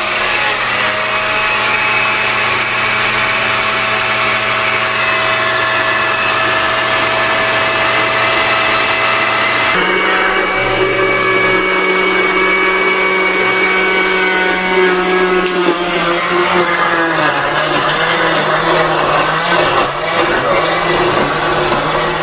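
Electric countertop blender running steadily, liquidizing chopped vegetables and water into a marinade. Its pitch and tone change abruptly about ten seconds in, and the motor note wavers lower later as the mixture turns smooth.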